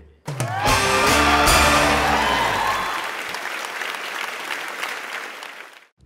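Game-show reveal music sting: a short rising swell into a bright held chord with a cymbal-like crash. It fades out slowly over about five seconds, marking the lead-in to the results.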